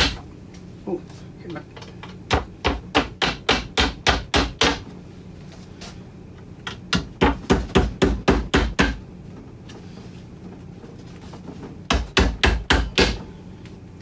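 Claw hammer tapping dowels into the pre-drilled holes of a particleboard cabinet panel. The blows come in three quick runs of about eight to ten strikes each, roughly four a second, with short pauses between the runs.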